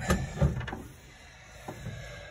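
Handling noise from a phone being moved and pocketed: a couple of dull rubbing knocks in the first half second, then quieter rustle, with a small click near the end.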